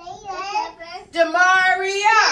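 Young children singing together with a woman's voice, a classroom name song; the first notes are short and broken, and the second half is one long held note.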